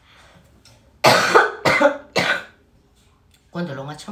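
A woman coughing three times in quick succession, starting about a second in, each cough loud and short.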